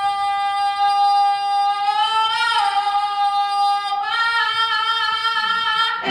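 A young man singing alone, holding long high notes with no accompaniment. The held note swells and wavers about halfway through, then steps up to a higher note about four seconds in.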